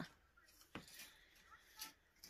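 Near silence, with two faint short scrapes of a pointing trowel working lime mortar into brick joints.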